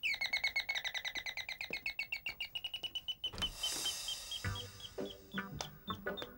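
A high, bird-like chirping trill: a fast, even run of about ten chirps a second for three seconds, then a brief hiss, then slower chirps of the same pitch.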